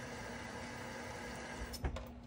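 A steady hiss with a low, even hum under it, then a short knock just before the end.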